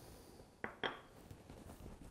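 Two light knocks of dishes or cutlery, about a fifth of a second apart, a little over half a second in, as plated food is handled.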